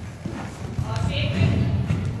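A horse's hooves thudding on soft sand arena footing as it lands after a jump and canters on. The thuds grow loudest in the second half.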